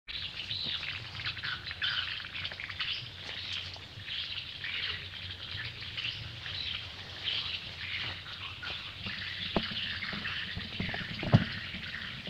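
Small birds chirping continuously in a dense chorus of short, high calls, over a low steady hum. A couple of sharp knocks come near the end.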